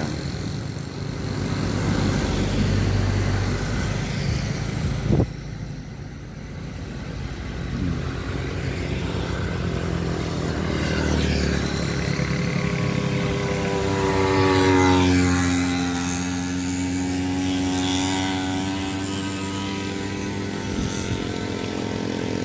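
Small motorcycles and a minivan passing on the road one after another, their engines rising and fading as they go by. Past the middle, one engine's note sinks and then climbs again as it passes. A single sharp knock comes about five seconds in.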